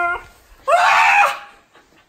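A short high-pitched vocal cry, then a louder playful shriek lasting about half a second, after which it goes quiet.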